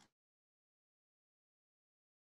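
Silence: the audio track is completely dead, with no room tone at all.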